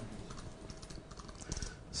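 Computer keyboard being typed on: soft, irregular key clicks.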